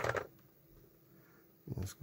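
A pause in a man's speech: near silence with faint room tone, his voice trailing off at the start and one short spoken word near the end.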